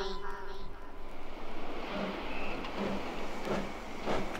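DJ mix of vinyl records: a funk/disco track fades out in the first half-second as the mixer is turned down, leaving a quieter, steady rushing noise bed from the intro of the next record.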